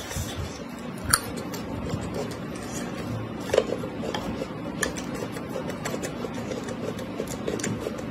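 Close-miked chewing of sliced raw red chilies and noodles, with a few sharp clicks and crunches over a steady low background.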